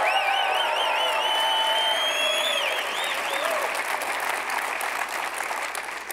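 Audience applauding and cheering, with a wavering high-pitched whistle over the first three seconds. The applause tapers off near the end.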